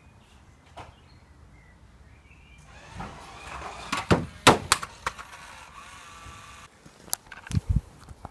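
Toy RC car's small electric motor whirring as it drives off a step for a jump, with several sharp plastic clatters about four seconds in as it hits down. The whirr cuts off, then a few low thumps follow near the end.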